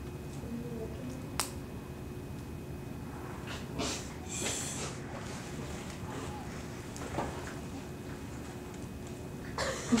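Quiet room tone while a long butane utility lighter is held to a small pile of lycopodium powder. There is a single sharp click about a second and a half in, a short soft hiss around four seconds, and a faint tick later. The compacted pile only burns with a small flame.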